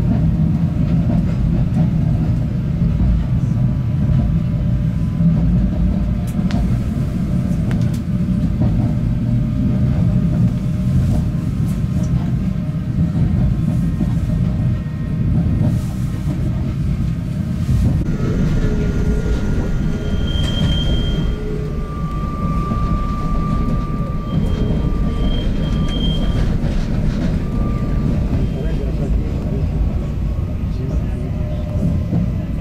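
Narrow-gauge electric railcar running at speed, heard from inside the car: a steady low rumble of wheels on the track. In the second half, thin high tones come and go over the rumble.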